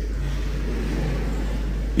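A steady low hum, with no speech and no distinct events.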